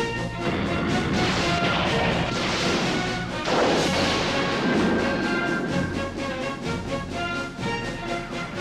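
Film score music with two energy-beam blast sound effects over it: a long noisy blast starting about a second in, and a sharper one at about three and a half seconds.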